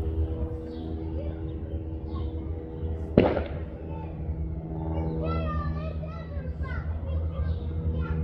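Background chatter of a crowd of onlookers, children's voices among them, over a steady low hum. A single sharp bang about three seconds in is the loudest sound.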